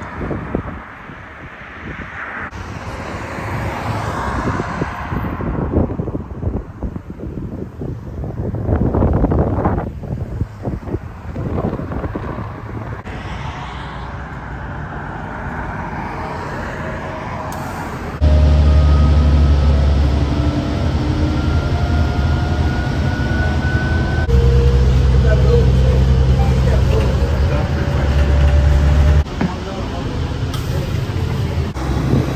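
Road traffic passing in wind. After a sudden jump in level, a city transit bus is heard pulling away as from inside: a loud, steady low drone with a whine that rises in pitch, breaks off and rises again partway through.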